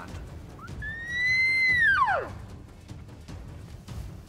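Elk bugle call blown by a hunter through a bugle tube, imitating a bull elk's bugle. One high whistle starts about half a second in, rises, holds for about a second, then drops steeply to a low note.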